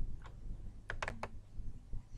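A few light computer mouse clicks, two in quick succession about a second in, over faint room noise.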